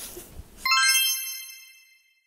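A bright ding-like chime sound effect: several high ringing tones start together about two-thirds of a second in and fade away over just over a second.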